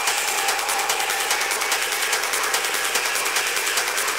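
Industrial techno in a stripped-back breakdown: a dense bed of electronic noise and hiss with fast rhythmic ticks in the treble and a faint held tone, with no bass or kick drum.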